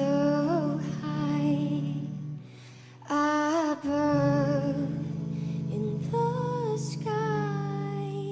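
A woman singing a slow song live into a microphone over acoustic guitar and a held low backing chord, with a brief pause between phrases about two and a half seconds in.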